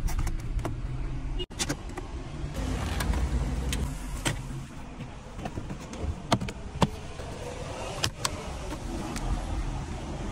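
Scattered sharp clicks and knocks from plastic dashboard trim and a metal-cased car radio being handled and pulled from the dash, over a steady low rumble.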